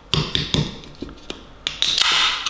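A few light taps and clicks on an aluminium can of carbonated Monster Energy drink, then near the end the ring-pull cracks open with a loud hiss of escaping gas.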